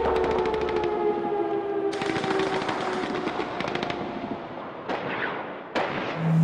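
Rapid automatic gunfire in two bursts, a short one and then a longer one about two seconds in, over a sustained tone that fades out. A couple of single sharp hits come near the end.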